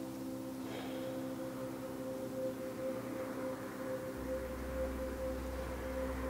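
Soft ambient background music of steady, sustained tones. A low hum joins about two-thirds of the way through.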